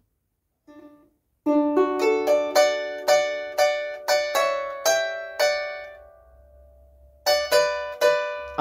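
Harp strings plucked by hand: a quick phrase of a dozen or so notes over a ringing low note, left to die away, then plucking starts again near the end.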